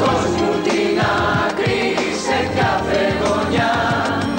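Music: a group of voices singing together in chorus over a band with a steady beat.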